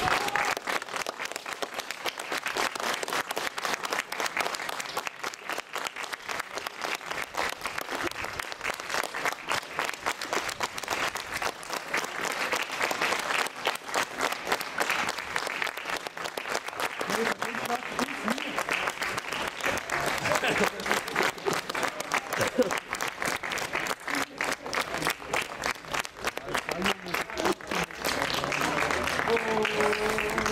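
A small crowd of spectators clapping steadily at full time of a football match, applauding the teams off the pitch. A few voices call out in the second half.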